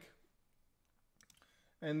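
A few faint computer mouse clicks a little over a second in, in an otherwise quiet pause; a man's voice starts near the end.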